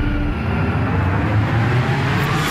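Dark cinematic sound design from a music video teaser: a held low note breaks off just after the start, leaving a loud low rumble under a slowly rising tone.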